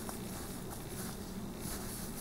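Low, steady background hiss of room tone, with a faint click just after the start.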